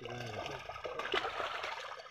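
Water splashing and sloshing around a seine net crowded with live fish as it is hauled together in shallow pond water, with small irregular splashes from the fish and the handling.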